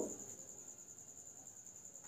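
A faint, steady high-pitched cricket trill, pulsing rapidly and evenly.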